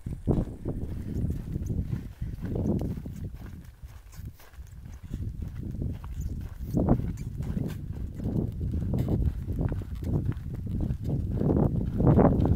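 Footsteps on a dirt hiking trail, with wind buffeting the microphone in uneven gusts.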